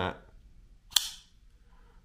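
Shirogorov F95 R19 folding knife flipped open: one sharp snap about a second in as the blade swings out and locks.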